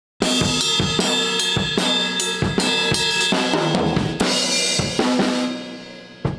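Acoustic drum kit played busily, with snare, bass drum and cymbal strokes starting a moment in. A cymbal crash about four seconds in is followed by a few more hits, and the sound dies away near the end.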